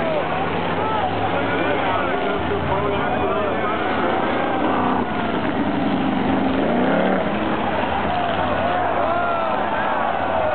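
Several race car engines running together around a speedway track, one note rising about six to seven seconds in, with crowd voices over them.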